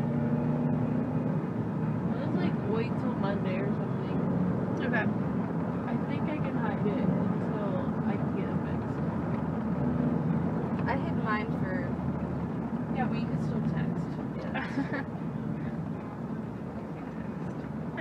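Car engine and road noise heard from inside the cabin while driving, a steady low drone, with indistinct talking at times.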